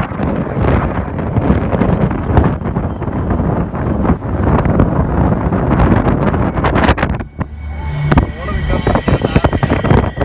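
Wind buffeting the phone's microphone from a moving car, over road and engine noise, with a short lull about seven seconds in.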